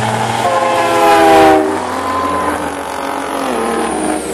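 An air horn sounds one loud blast of about a second, over the steady running of big-rig semi race truck diesel engines.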